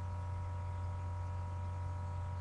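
Steady low hum with a few faint, constant higher tones above it, unchanging throughout.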